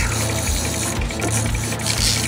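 Fishing reel's clicker ratcheting rapidly as a hooked fish pulls line off the spool.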